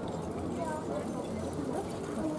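Hoofbeats of a pair of carriage ponies pulling a four-wheeled carriage round a dirt cone course, with people talking in the background.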